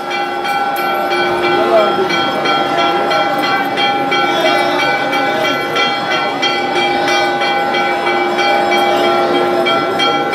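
Temple bells rung continuously during aarti: a steady, loud ringing of several held tones with rapid repeated strikes, and voices chanting beneath.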